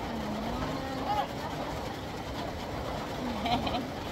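Soft, wordless vocal sounds between a mother and her baby at play: a low hum in the first second, a short rising sound about a second in, and brief higher vocal sounds near the end, over a steady background noise.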